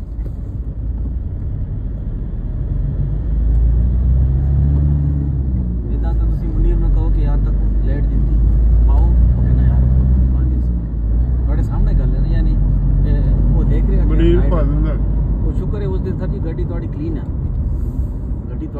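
Engine and road rumble heard from inside a moving car, growing louder a few seconds in and staying strong through the middle, with faint, indistinct voices in the cabin.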